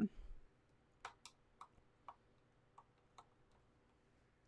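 Paintbrushes being put down: about six light, separate clicks and taps as the brush handles knock together and against the desk things.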